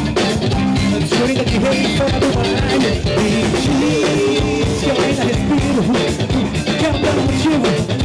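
Garage-rock band playing live, with drum kit, electric guitar and bass, loud and dense, with vocals at times.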